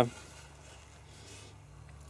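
A pause in a man's talk: only faint, steady background noise with a low hum, and no distinct sound events.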